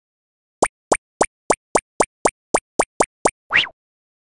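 Cartoon sound effects for an animated intro: a quick run of eleven short popping blips, about four a second, each sweeping upward in pitch, followed near the end by a longer rising swoop.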